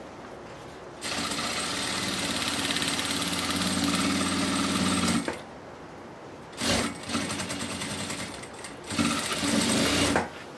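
Sewing machine stitching a seam through layered patchwork fabric in three runs: a steady run of about four seconds, a pause broken by one short knock, then two shorter runs near the end.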